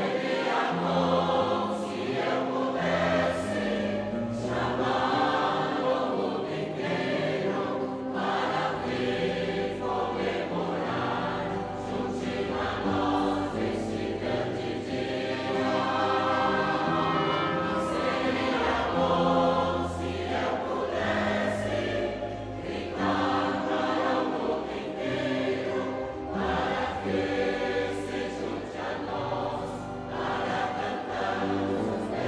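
A group of voices singing a hymn together, with long held notes.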